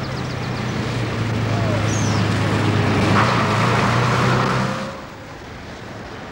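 A road vehicle's engine running with tyre hiss on a wet road, growing louder as it comes close, then cutting off sharply about five seconds in. Birds chirp faintly near the start.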